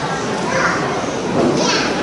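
Children's voices talking and calling out over one another.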